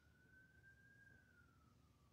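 Faint emergency-vehicle siren, one slow wail rising in pitch and then falling away near the end.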